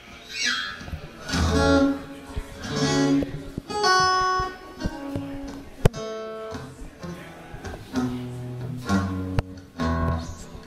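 Acoustic guitar being played, picked notes and chords ringing out in short phrases. There is one sharp click about six seconds in.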